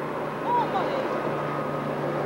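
Outdoor street ambience: a steady rushing background with a low, even hum, and a faint voice briefly about half a second in.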